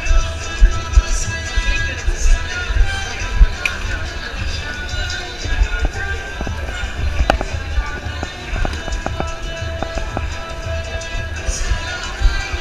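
Music playing amid the babble of a crowded city sidewalk, with low rumbling knocks and a few sharp clicks in the second half.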